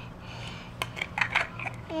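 Light, irregular clicks and taps of a small clear plastic case being handled, a few in quick succession near the middle, over a steady low hum.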